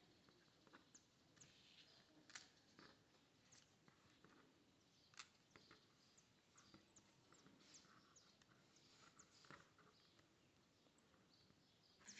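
Near silence with faint, scattered small clicks and rustles of fingers working thin polypropylene cord through a macramé square knot beside plastic beads.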